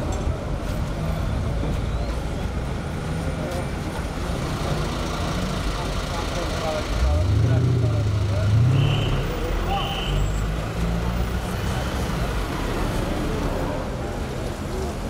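Fire truck engine running at idle, a low steady rumble that rises briefly in pitch and loudness about seven seconds in. Two short high beeps sound about nine and ten seconds in, over background voices.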